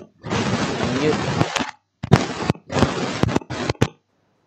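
Noise from a participant's open microphone coming through an online meeting: harsh hissing in four bursts, broken by sharp clicks, that cuts off just before the end.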